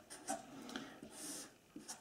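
Marker pen writing on paper, faint: a few short scratching strokes, then one longer stroke a little over a second in as a straight line is drawn.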